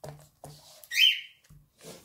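A pet bird giving one short, loud, high-pitched chirp about a second in.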